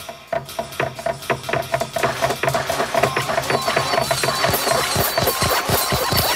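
Layered cartoon desk-lamp hopping sound effects over music. Many rapid overlapping thuds grow denser, with a steady tone early on and high squeaks joining in later.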